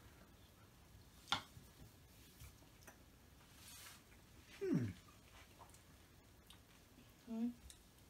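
Quiet room while people taste ice cream. One sharp click about a second in, like a spoon against a bowl. Then a falling "mmm" hum of appreciation around the middle, and a short hum near the end.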